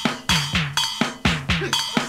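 Instrumental intro of a rock 'n' roll recording: drums keep an even beat of about four hits a second, each hit carrying a short low note and a bright ringing tone.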